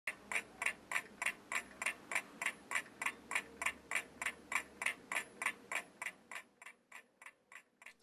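Clock ticking steadily at about three ticks a second, fading away over the last couple of seconds.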